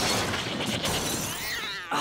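A cartoon crash sound effect: a sudden noisy burst of breaking and clattering that fades away over about a second and a half.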